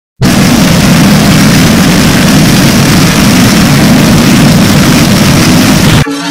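Very loud, heavily distorted noise with a strong low rumble and no clear tones, starting abruptly: digitally mangled audio of the kind used in logo-effect edits.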